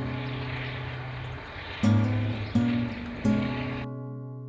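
Background acoustic guitar music, with chords plucked about two seconds in and twice more after that. Under it is a steady rushing outdoor noise that stops suddenly near the end.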